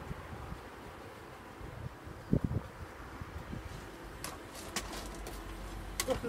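Bee smoker in use over an open hive: its bellows puff a couple of times about two seconds in, giving low thumps, followed by a few sharp clicks near the end as the metal smoker is handled and set down.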